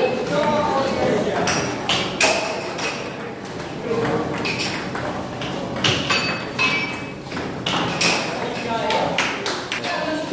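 Table tennis rally: the plastic ball clicking off the paddles and bouncing on the table in a quick, uneven run of sharp ticks.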